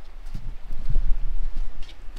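Irregular low thumps and scuffs of footsteps on a rocky gorge path, mixed with knocks from a handheld camera being turned around, over a low rumble on the microphone.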